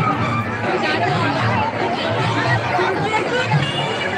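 Outdoor crowd babble: many people talking at once in overlapping voices, steady throughout.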